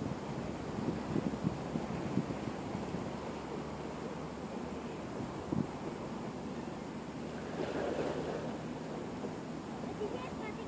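Wind buffeting the microphone in irregular low gusts over a steady outdoor hiss, with a few soft bumps and a brief swell of noise about eight seconds in.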